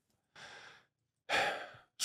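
A person breathing into a close studio microphone: a faint breath, then a louder breath about a second and a half in that fades just before speech starts again.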